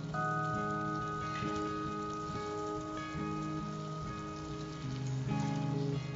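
Rice, moong dal and milk simmering in a clay pot, a soft crackling, pattering bubbling, under quiet background music with long held notes.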